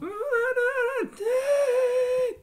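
A man's voice singing two long, high held notes with a slight waver, the second beginning just after a second in, with no accompaniment heard beneath.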